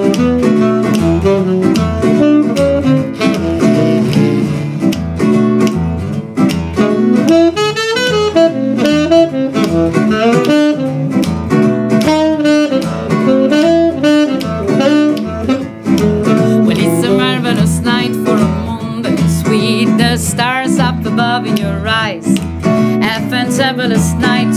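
Acoustic guitar strumming chords in a steady rhythm under a saxophone melody, a jazz-style instrumental duo.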